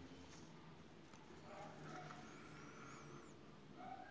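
Near silence: faint room tone, with a faint, high, wavering whistle-like sound about two seconds in.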